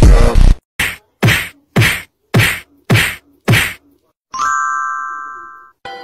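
Music cuts off, then six sharp whacks about two a second, then a bell-like ding that rings and fades.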